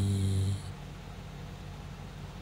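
A low male voice holds the last drawn-out syllable of a word for about half a second, then stops. After that there is only a quiet, steady low hum of room tone.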